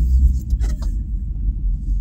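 Low, steady rumble of a car heard from inside the cabin, swelling louder in the first half second.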